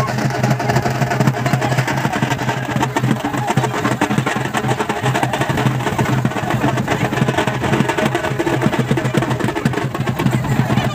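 Music with fast, dense drumming, the strokes coming in a quick, even rhythm.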